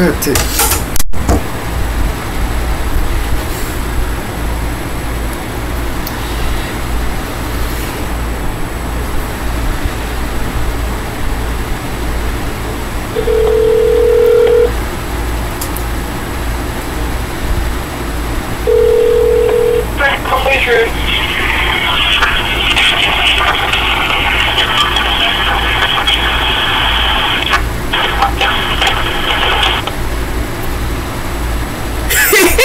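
A phone on speaker, ringing out: two steady ringback tones, each a second or two long and several seconds apart, then from about two-thirds of the way in, thin telephone-line audio from the other end plays through the speaker. A steady low hum runs underneath, and a clatter of handling comes in the first second.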